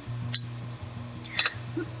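A steady low hum with two short, light clinks about a second apart, the second with a brief ringing.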